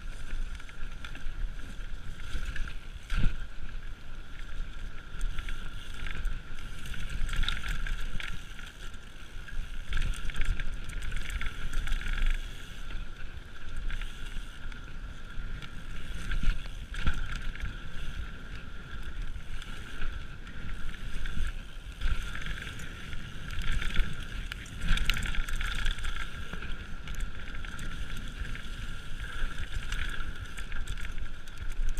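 Mountain bike ridden at speed down a dirt trail: wind buffeting the microphone over steady tyre noise, with frequent knocks and rattles of the bike over bumps, the sharpest about three seconds in.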